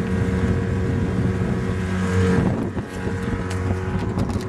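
A boat motor hums steadily, with wind buffeting the microphone and the rush of water around it; the hum eases a little after about two and a half seconds.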